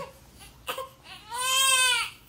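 Newborn baby girl fussing: a brief whimper under a second in, then one loud wavering cry near the end that rises and falls in pitch. She is crying in discomfort from a soiled diaper.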